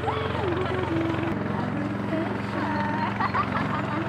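A motor running steadily with a low, even drone, while women talk and laugh over it.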